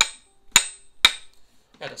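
Three light, evenly spaced taps of a tool on a vintage Necchi sewing machine, each with a short high ring. They show the steady, not-too-hard tapping used to loosen a stuck hand wheel.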